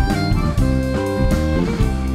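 Jazz fusion quartet playing live: violin and electric guitar over bass guitar and drum kit, with one note held for about a second midway.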